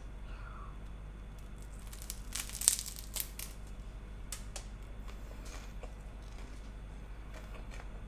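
Crunching of a puffed rice cake topped with cottage cheese as it is bitten and chewed: a cluster of crisp crunches about two to three and a half seconds in, then a few fainter ones.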